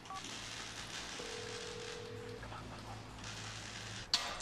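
Telephone call being placed, heard faintly: a short keypad beep just after the start, then a steady ringing tone a little over a second long, over a low hum.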